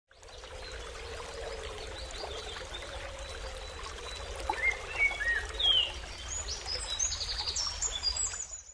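Outdoor ambience: a steady hiss of background noise, with birds chirping in short, high, gliding calls from about halfway through.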